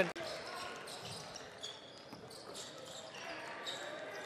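Faint indoor basketball-arena ambience: a low murmur of the hall with a few light knocks and brief high squeaks from play on the court.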